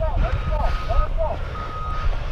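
Back-up alarm of heavy construction equipment beeping: two steady, single-pitched beeps of about half a second each, one about half a second in and one near the end. The equipment is reversing.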